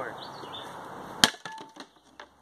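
A single hard blow of a frying pan on an old entertainment center, about a second in, breaking the panel apart, followed by a quick scatter of smaller knocks as the pieces fall.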